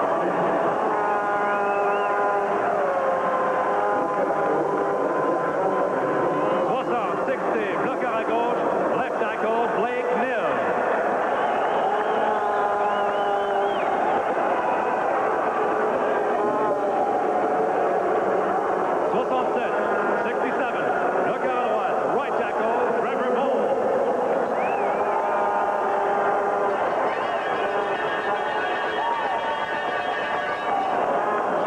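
An echoing voice over a stadium's loudspeakers, with some long held tones, over steady crowd noise.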